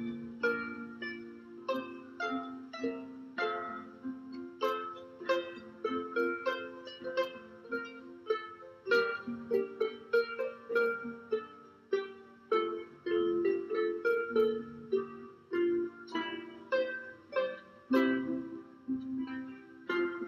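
An ensemble of Derwent lever harps (Explorer 34 and Adventurer 20) playing a Welsh folk tune: a plucked melody over low chord notes, each note striking and ringing away, several notes a second without a break.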